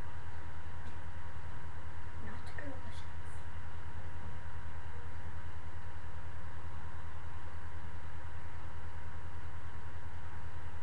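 Steady low electrical hum with hiss and a thin constant tone from the webcam's microphone, with a faint brief sound around two to three seconds in.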